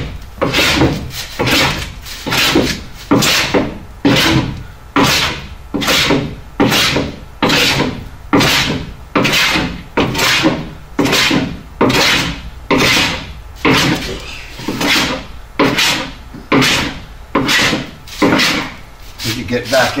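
Antique wooden coffin plane with a curved sole, pushed in quick repeated strokes across a wooden boat hull's strip planking, shaving the wood to fair the curve. The strokes come nearly two a second, each starting sharply and tailing off, with the plane set to take a slightly heavier cut.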